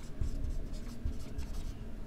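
Marker pen writing on a whiteboard: a run of short, irregular strokes.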